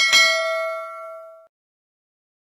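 Bell-like ding sound effect for a notification-bell click in a subscribe-button animation: struck twice in quick succession, then ringing out and fading within about a second and a half.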